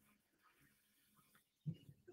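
Near silence: room tone, with one brief faint low sound near the end.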